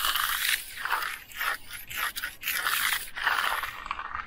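Steel hand trowel scraping across the surface of a setting concrete slab in a series of sweeping strokes. This is the final finishing pass, smoothing out fuzz and rough spots.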